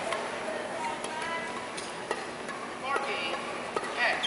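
Sports-hall ambience between badminton rallies: a murmur of distant voices with a few short squeaks and light clicks.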